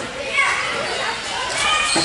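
Girls' voices from volleyball players and the crowd calling and shouting over one another, echoing in a large gymnasium.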